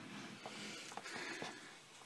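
Quiet room tone with a few faint clicks about half a second apart.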